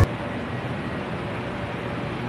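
Steady, even rumble and hiss of an MRT Pink Line monorail train and its elevated station, with no distinct events.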